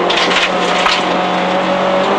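Renault Clio Williams rally car's 2.0-litre four-cylinder engine running hard at a steady pitch, heard from inside the stripped cabin with road and tyre noise. A few brief clicks come in the first half second.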